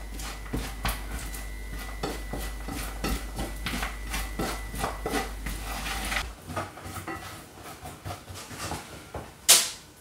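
A wooden spatula stirs sugar-glazed almonds in a stainless steel frying pan: rapid scraping and clicking of the nuts against the pan over a steady low hum. The hum stops about six seconds in, leaving sparser, quieter clicks, and a single short, loud scrape or knock comes near the end.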